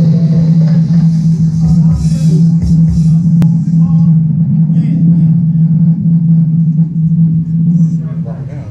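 House music played loud over a DJ sound system, with a deep, steady bass tone held throughout; the music cuts out near the end.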